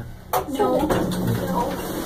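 Mostly speech: voices talking, with a steady low hum underneath.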